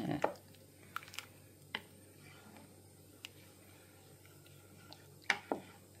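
Wooden spoon stirring thin, milky rice pudding in a slow cooker pot: a few faint wet scrapes and light taps in the first few seconds, then near quiet.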